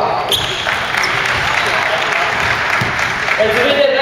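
Sound of an indoor basketball game in a gymnasium hall: a basketball bouncing on the wooden court amid a loud wash of players' and onlookers' noise. A voice is heard near the end.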